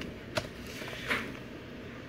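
Small clear plastic bags of screws being handled: a brief click shortly after the start and a soft crinkling rustle about a second in, all quiet.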